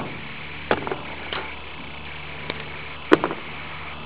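A few light clicks and taps from an oil pan gasket being handled and fitted against a stamped-steel oil pan, the sharpest about three seconds in. A steady low hum runs underneath.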